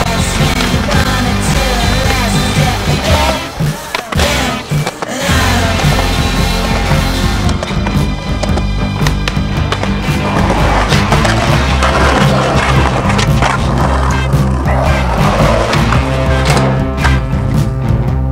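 Music playing over the sounds of street skateboarding: skateboard wheels rolling on concrete and the board clacking as tricks are popped and landed. The music drops briefly about four seconds in, and sharp knocks come through.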